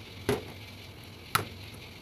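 Saucepan of radish and beef soup boiling with a steady low bubbling hiss, broken twice, about a second apart, by a sharp knock of the spoon against the steel pot.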